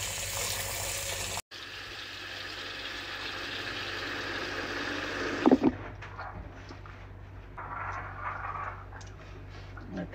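Kitchen faucet running, its stream splashing over a lime and the citrus in a colander, with a brief gap about a second and a half in. The water stops with a knock about five and a half seconds in, leaving faint handling sounds.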